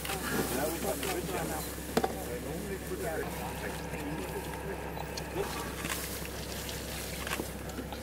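Several people talking indistinctly in the background while they work, with water sloshing in buckets and a couple of sharp knocks, one at the start and one about two seconds in.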